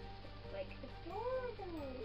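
A single drawn-out, meow-like call that rises and then falls in pitch about a second in, over soft background music.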